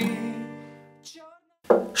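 A strummed chord on a steel-string acoustic guitar ringing out and fading over about a second at the end of a sung verse. A man's voice starts near the end.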